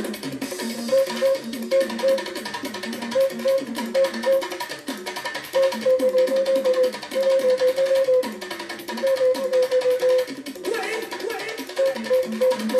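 Music led by a plucked string instrument picking a short melody in quick repeated notes, with light percussion behind it.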